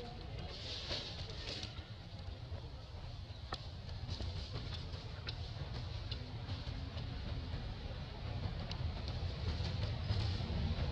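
Light crackling of dry leaves being handled by a baby macaque, a few sharp crinkles spread through, over a steady low rumble.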